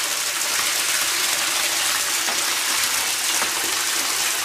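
Bathtub tap running, water gushing and splashing steadily into a tub that is filling up.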